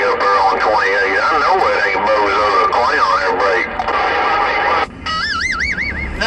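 CB radio transmission through the radio's speaker: a voice sliding widely up and down in pitch, sung or wailed rather than spoken. It drops out briefly about five seconds in, and a warbling tone follows.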